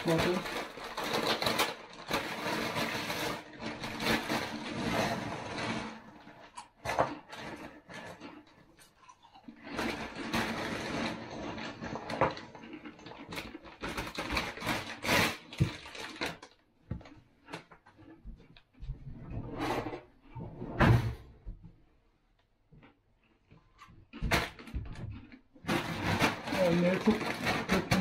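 Plastic chip bag crinkling in the hands as it is opened and handled, and chips rattling as they are shaken out of the bag into a bowl. The sound comes in irregular spells with short quiet gaps.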